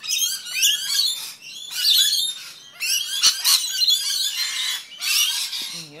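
Rainbow lorikeets chattering with rapid, high-pitched squawks and chirps, then a longer, rasping screech near the end. A single sharp click about halfway through.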